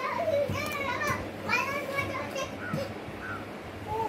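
Rose-ringed parakeet chattering in a high, speech-like voice: a string of short calls with wavering pitch, fainter after the first two and a half seconds.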